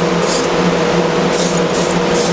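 HVLP spray gun, its spray cone closed right down, giving about three short hissing bursts of Cerakote coating through a piece of burlap. Under it runs the steady hum of the spray booth's exhaust fan.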